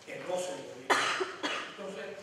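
A man coughs into a handheld microphone about a second in, the loudest sound here, between stretches of speech.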